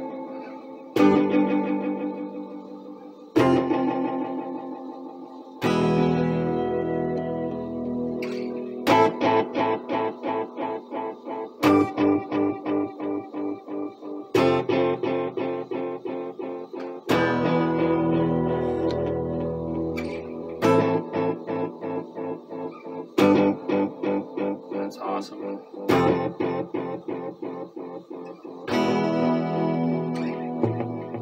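A guitar played through a vintage Elk EM-4 tape echo unit: strummed chords that ring out and fade, some passages broken into quick, evenly repeating pulses at about two or three a second.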